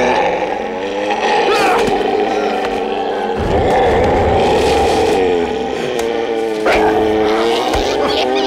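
Dramatic film score with long held tones, mixed with creature growls from an attacking mummy and a sharp hit about two-thirds of the way through.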